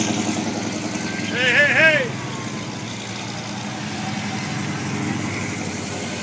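Car engines running at a slow crawl as classic convertibles roll past in a parade, with a person's short whooping cheer about a second and a half in.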